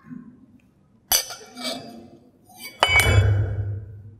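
A drinking glass clinking against a hard surface as it is handled and set down on a table, with sharp clinks about a second in and near three seconds in. The last clink is the loudest and comes with a dull low knock picked up by the nearby microphone.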